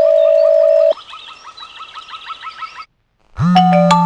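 Cartoon telephone sound effects: a steady electronic beep held for about a second, then a quieter repeating chirpy trill for about two seconds. After a short silence a tune with held notes starts near the end.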